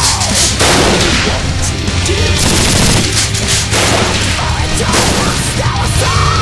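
Loud music with several bursts of gunfire sound effects over it, spread through the few seconds.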